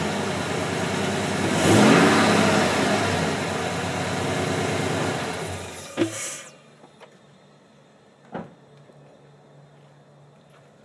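GMC Sierra 5.3-litre V8 fitted with a K&N cold air intake, running and revved once about two seconds in. The engine then dies away and stops by about six and a half seconds in, with a sharp click as it shuts off and another click a couple of seconds later.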